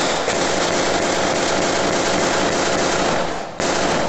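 Heavy, continuous gunfire: shots come so fast they run together into one loud rattle, with a short break near the end before the firing picks up again.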